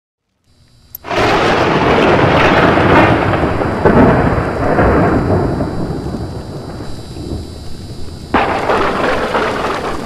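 A loud, noisy sound effect that starts suddenly about a second in and slowly dies down, with a second sudden hit near the end.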